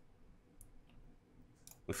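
A few faint, sharp clicks, then a man's voice begins near the end.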